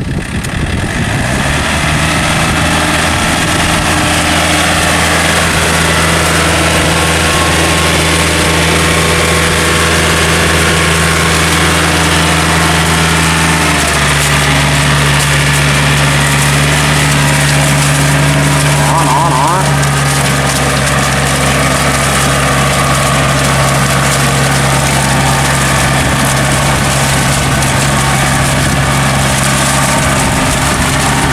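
Yanmar tractor's diesel engine running steadily while driving steel cage wheels through paddy mud. The engine note drops slightly about halfway through.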